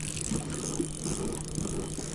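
Spinning reel being cranked steadily against a hooked smallmouth bass, over a steady low hum.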